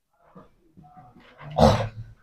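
Faint scratches and taps of a marker writing on a whiteboard, then one short, louder sound about a second and a half in.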